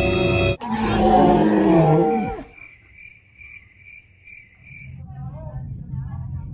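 A held musical note cuts off just over half a second in. A loud roar, falling in pitch, follows for about two seconds, made for a plush toy alligator. Then comes a run of short, high, evenly spaced chirps, about three a second.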